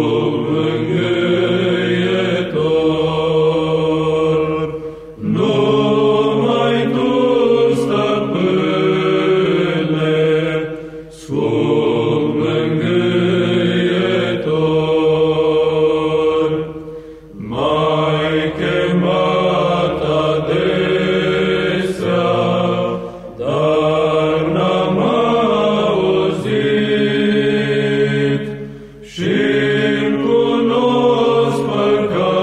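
Male monastic choir singing a Romanian Orthodox priceasnă unaccompanied, in slow held phrases about six seconds long with brief breaks between them.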